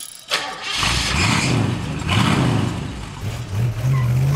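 A car engine starting and revving. A click comes about a third of a second in, then the engine catches with a burst of noise and runs with a low note that rises and falls with the revs, climbing near the end.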